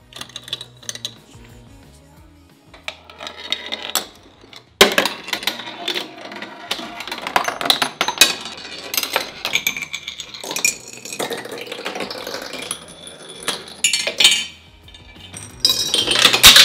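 Marbles running down a marble run built from scrap metal parts. About five seconds in comes a sharp clank, then about ten seconds of dense, irregular metallic clicks, rattles and clinks as they strike the metal pieces. The clatter dies down briefly and starts again near the end.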